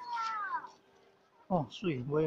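A short high call falling in pitch, then a voice exclaiming "oh" with a steep drop in pitch about one and a half seconds in.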